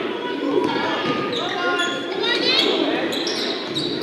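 A basketball being dribbled on a hardwood gym floor during live play, with sneakers squeaking about halfway through and voices of players and spectators echoing in the large gym.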